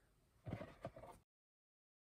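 Near silence: one faint, brief sound about half a second in, then the sound cuts out completely.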